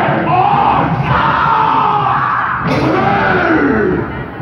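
Bhaona actors' loud, drawn-out theatrical cries, arching up and down in pitch, over live stage music. A sharp crash comes about two and a half seconds in.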